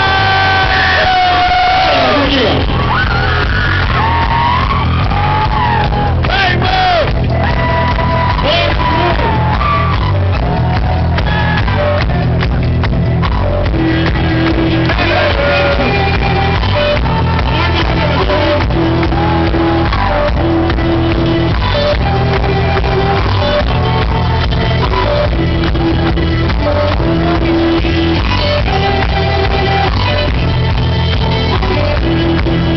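Live Irish folk-rock band playing loud through a PA, with a steady drum and bass beat under a melody line of held notes. There is shouting and whooping over the music in the first few seconds.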